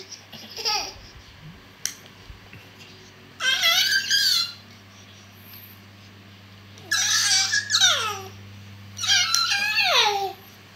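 A baby's high-pitched squealing vocalisations: four drawn-out calls, most about a second long, several sliding down in pitch at the end.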